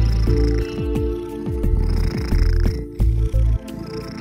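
Grey tabby cat purring close to the microphone, the low rumble swelling and dropping with each breath.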